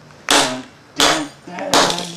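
Hammer blows smashing the remains of a Motorola Razr flip phone on a concrete floor: three sharp, loud cracks a little under a second apart.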